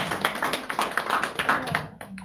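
Applause: many hands clapping, dying away near the end.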